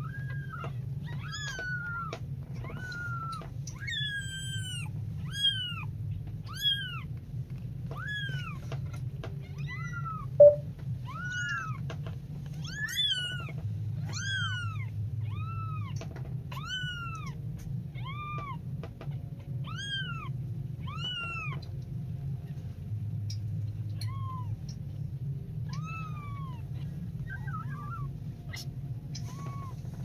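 Very young kittens mewing over and over, thin high cries about once a second, each rising and then falling in pitch, growing sparser near the end. A steady low hum runs underneath, and a single sharp knock sounds about ten seconds in.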